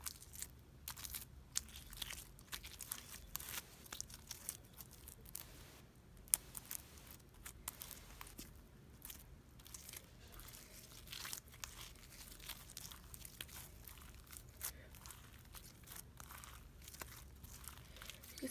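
Homemade slime being mixed and worked, giving a quiet, irregular run of sticky crackles and clicks, with one sharper click about six seconds in. The batch is not coming together properly.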